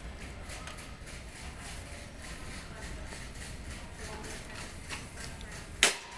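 A flat-pack cardboard box being handled and loaded onto a metal flatbed warehouse trolley: scattered clatters and knocks over a steady low hum, with one sharp, loud knock near the end.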